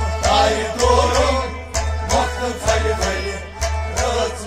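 Kashmiri folk music: harmonium and a plucked rabab with steady percussion strokes about twice a second, and a male voice singing a melodic line through the first half.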